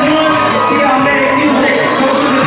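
Loud music with singing, its steady beat marked by recurring cymbal or hi-hat hits.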